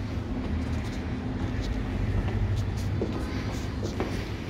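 A steady low rumble, with a few faint footfalls as someone climbs stairs.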